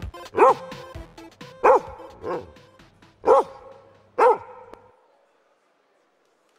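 A dog barks four times, each bark a short call that rises and falls in pitch, with a weaker bark between the second and third. 8-bit chiptune music stops right at the start, and a low hum underneath ends about five seconds in.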